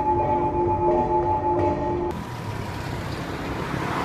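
Held tones of background music for about two seconds, then an abrupt change to steady street traffic noise with a low rumble of passing vehicles.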